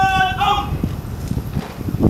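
A drawn-out shouted parade word of command ends, followed by a run of several sharp knocks of boots striking the parade ground as the troops and colour party move.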